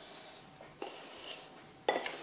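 Kitchenware being handled on a countertop: a soft knock a little before halfway and a sharper click just before the end.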